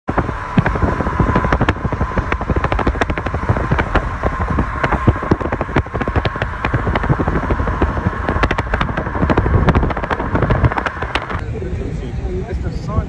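Wind and road noise of a fast-moving vehicle buffeting a phone microphone: a heavy rumble with dense crackling pops and a faint steady whine. It cuts off suddenly near the end.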